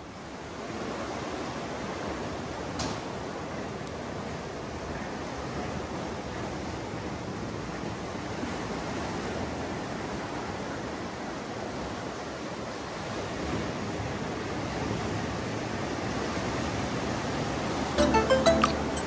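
Steady rushing of ocean surf breaking on a rocky shore below, swelling a little near the end.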